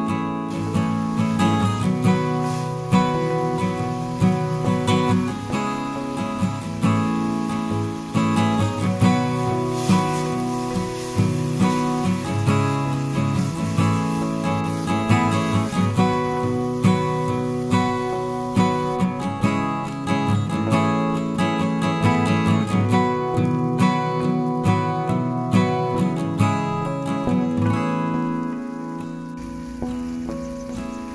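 Background music: acoustic guitar plucked and strummed at a steady pace.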